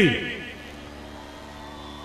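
The last word of a man's speech through a public-address microphone fades out within about half a second. A pause follows, holding only a faint steady hum.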